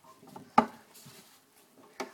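One sharp knock a little over half a second in, with a few faint taps of something hard being handled around it.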